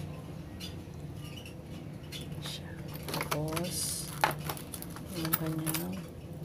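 Hands handling a lockset's metal latch and its clear plastic clamshell packaging: scattered light clicks and knocks, with a short stretch of plastic crinkling about halfway through, over a steady low hum.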